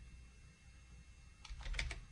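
Computer keyboard being typed on: after a quiet second or so, a quick run of about four keystrokes near the end.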